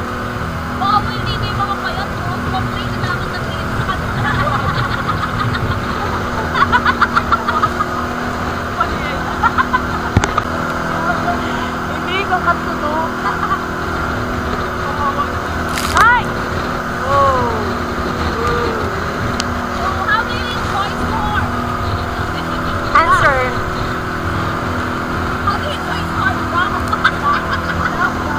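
Outrigger boat's engine droning steadily under a wash of wind and rough water, with passengers' voices laughing and crying out now and then, including a few short rising-and-falling cries.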